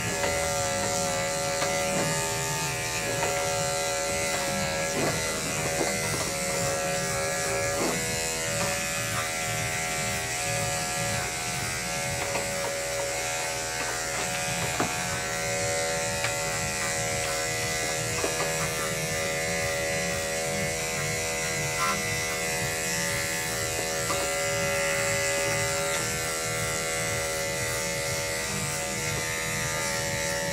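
Corded electric dog clippers running with a steady hum as they are worked through a shih tzu's coat.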